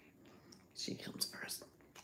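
A woman whispering under her breath for under a second, about a second in, soft and hissy.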